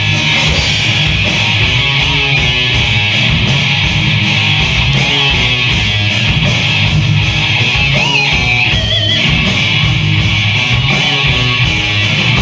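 Live rock band playing an instrumental passage: electric guitar, bass guitar and drums, loud and steady throughout. A few high sliding notes come in about eight to nine seconds in.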